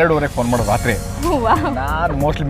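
A man's voice talking over background music, with a soft hiss through the first second and a half.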